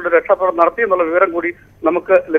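A man speaking Malayalam over a telephone line, his voice thin and phone-like, with a short pause about one and a half seconds in.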